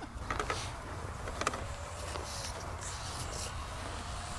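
Steady low wind rumble on the microphone, with a few light clicks in the first second and a half and a faint, thin rising-and-falling whine in the middle.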